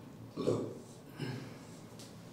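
Two short scrubbing strokes of a marker pen on a whiteboard, about a second apart, as words are underlined.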